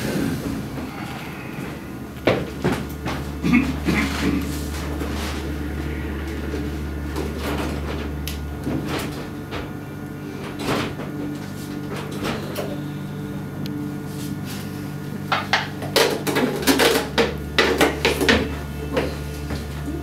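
Knocks, clicks and rustles of props being handled on stage, including a small box, with a cluster of them about two to four seconds in and another near the end. A low steady hum runs underneath, its deepest tone dropping out for several seconds in the middle.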